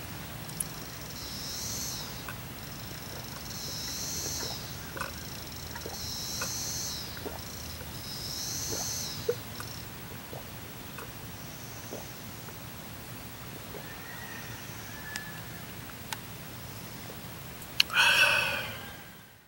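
A man drinking a mug of beer in long swallows, with small throat clicks and gulps. Over it, a high buzzing sound swells and fades about every two seconds, four times, then stops. A few faint chirps follow.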